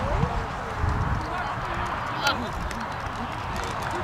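Distant voices of players and spectators calling and talking around a soccer field, with a low rumble throughout and one brief louder call about two seconds in.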